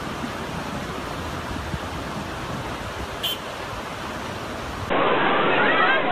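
Muddy flash-flood water rushing down a swollen river channel, a steady, even rush. About five seconds in it cuts abruptly to a louder, duller recording of water with people's voices over it.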